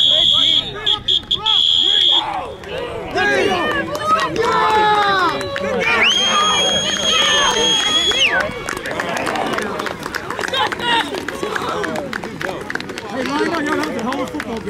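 A referee's whistle blowing the play dead: a broken blast that ends about two seconds in, then a second long, steady blast from about six to eight seconds. Shouting voices from the sideline and players carry on throughout.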